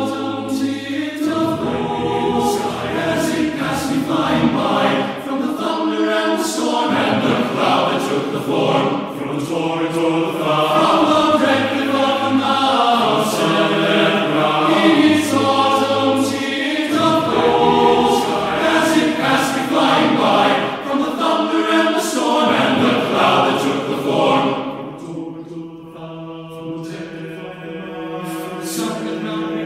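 Men's chorus singing a cappella in four-part TTBB harmony, the chords held and moving together; the singing grows softer near the end.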